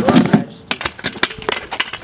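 Kick scooter clattering onto a small skate ramp: a heavy thump at the start, then a quick run of sharp knocks and clicks from the wheels and deck.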